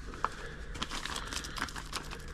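Plastic packet of maggot dehydrator powder crinkling as it is handled and tipped to sprinkle powder onto fishing maggots, with scattered small crackles.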